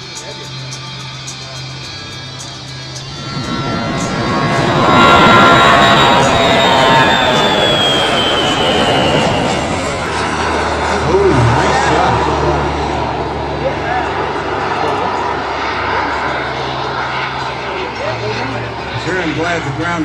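Twin model jet turbines of a radio-controlled A-10 Thunderbolt II passing close by. A rush of jet noise builds from about three seconds in and is loudest a couple of seconds later, with a whine that falls in pitch as the jet goes past, then steady jet noise as it flies on.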